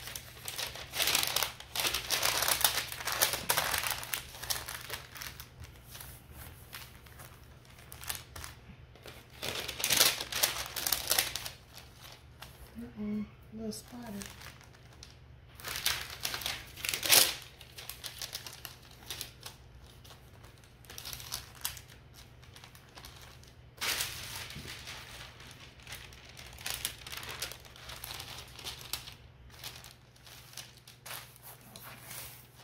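Sheets of butcher paper crinkling and rustling in irregular bursts as they are laid over iron-on vinyl and smoothed flat by hand before heat pressing.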